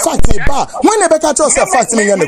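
A man talking fast and loudly, with a few sharp clicks or knocks between his words near the start.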